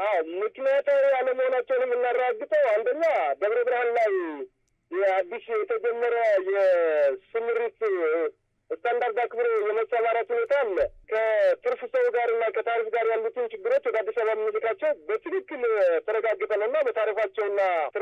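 Speech only: a person talking over a telephone line, the voice thin and narrow-band, with a few short pauses.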